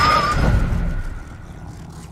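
Sound effects from a TV drama's soundtrack: a loud rushing noise with a deep rumble and a thin wavering whine, dying down about a second in.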